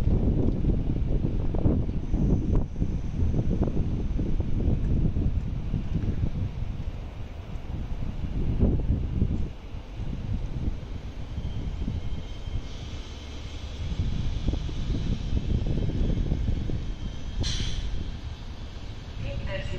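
Finnish VR double-decker intercity train rolling slowly past along the platform with a steady low rumble. A faint steady whine joins in during the second half, and there is a short hiss near the end.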